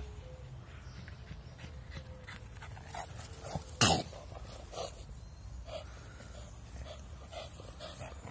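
Boston terrier and English bulldog panting as they play, with short breathy sounds every second or so. One single sharp, loud sound about four seconds in.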